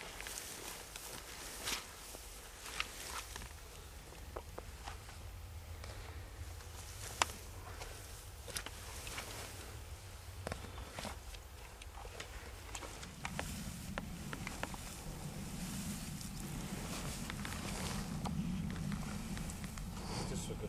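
Footsteps and rustling in tall dry grass as a sika deer carcass is dragged by its antlers and handled, with scattered light crackles and knocks. A low rumble comes in about two-thirds of the way through.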